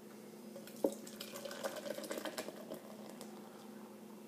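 Coors Light beer poured from an aluminium can straight down the middle into a glass: a sharp click about a second in, then glugging and splashing as the glass fills and foams, quieter near the end.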